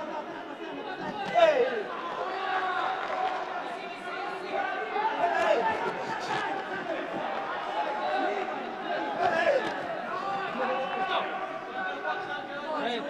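Overlapping shouting and chatter from ringside voices in a large hall during a boxing bout, with one louder shout about a second and a half in.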